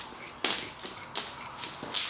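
A small hand tool scraping and raking soil and old roots from around the base of a wisteria root ball, in several short scratchy strokes.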